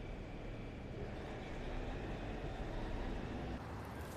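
A car engine running steadily, with a low hum that drops away shortly before the end.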